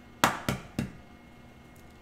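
An egg knocked three times against the rim of a plastic mixing bowl to crack it, the knocks about a third of a second apart.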